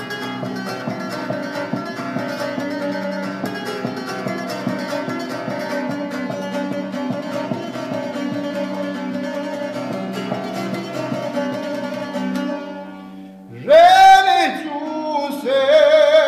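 A long-necked wooden folk lute strummed rapidly over a steady drone, fading out about three-quarters of the way through. A man's voice then comes in loudly, singing in a wavering, bending folk style.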